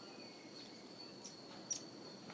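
Steady high-pitched trill of crickets, with two sharp pops about a second and a half in from the burning wood of a campfire.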